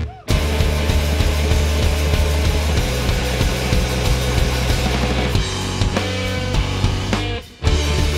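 Live rock band with electric guitar, drum kit and keyboards playing loud, stop-start music: the whole band cuts out for a split second right at the start and again shortly before the end, with a thinner stretch without the bass around six seconds in.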